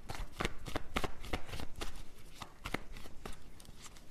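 A deck of tarot cards being shuffled by hand: an irregular run of quick card slaps and flicks.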